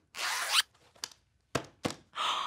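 A zipper on a shoulder bag being pulled shut in one quick zip of about half a second, followed by a few small clicks.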